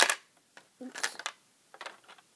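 Plastic Lego bricks clacking as the coin slide of a Lego candy machine is pushed in: one sharp click at the start, then a fainter click near the end.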